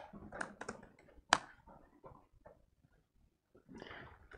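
Laptop keyboard keys tapped in scattered, uneven clicks, with a gap of about two seconds in the middle before the tapping resumes.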